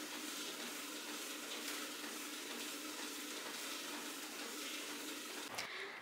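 Steady faint hiss with a faint low hum underneath: the room tone of a gym with a treadmill and an elliptical in use and ceiling fans turning.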